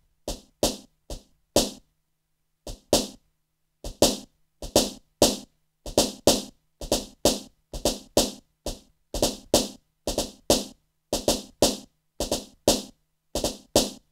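Acoustic snare sample played on an Akai MPC One's pads in 16 Levels velocity mode, so the hits come out at differing loudness. It is a run of short, sharp hits, two to three a second, with a brief pause about two seconds in.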